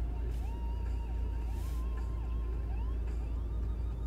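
A steady low rumble with faint background music over it: a slow melody of held notes that slide from one pitch to the next.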